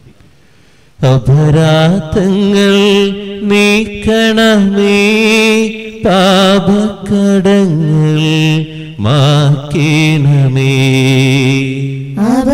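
A male voice chanting a slow liturgical hymn in long held notes with a wavering vibrato. It starts about a second in, after a brief hush.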